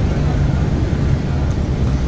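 New Flyer XDE60 diesel-electric hybrid articulated bus under way, heard from inside the cabin: a steady low drivetrain drone with road noise.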